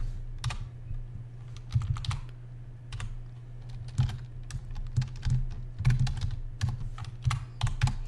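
Typing on a computer keyboard: irregular key clicks, some in quick runs, over a steady low hum.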